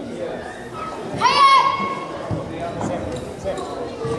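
A boy's karate kiai: one short, high-pitched shout a little over a second in, rising at the onset and then held briefly, shouted during the kata Taikyoku Nidan. Bare feet thud on the wooden hall floor under a murmur of voices echoing in the hall.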